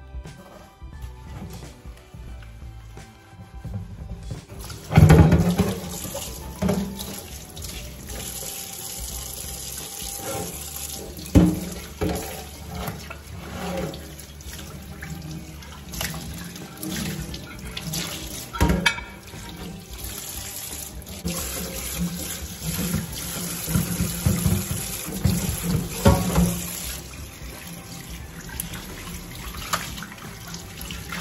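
Kitchen tap running into a stainless-steel sink while dishes are washed and rinsed by hand. The water comes on about four seconds in, and a few sharp knocks of crockery against the sink stand out above it, the loudest near the start and about eleven seconds in.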